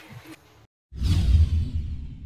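Whoosh sound effect of a TV channel's logo sting, coming in suddenly after a brief silence with a deep rumble and a hiss that falls away and fades.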